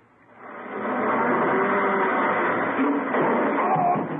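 Radio sound effect of a car engine running hard as one car pushes another along. It is a steady noise that swells in over about the first second.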